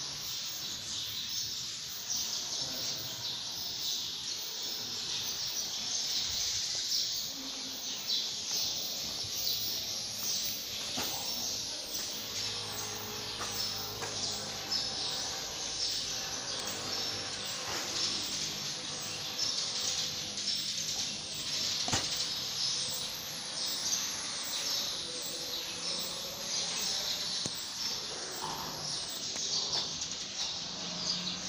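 Outdoor ambience: birds chirping over a steady high-pitched hiss.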